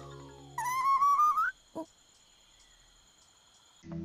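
Cartoon stomach-growl sound effect from an anime, a hungry character's stomach rumbling: a strange, wavering whistle-like tone about a second long that rises at its end. It is followed by a short blip.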